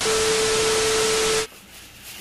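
TV-static glitch transition sound effect: a loud hiss of static with a steady beep tone underneath, cutting off suddenly about one and a half seconds in, followed by faint room tone.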